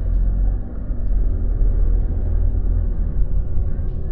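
Car driving, heard from inside the cabin: a steady low rumble of engine and road noise.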